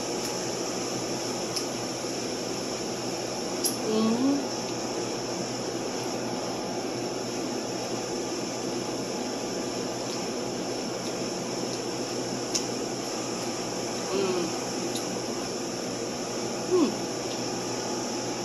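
Steady machine hum of the room's cooling or ventilation, with a woman's brief closed-mouth "mm" sounds three times while she eats.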